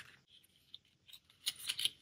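Small paper-and-cardboard box being handled and opened by hand: faint crinkles and small clicks, with one tick near the middle and a few more in the last half second, otherwise quiet.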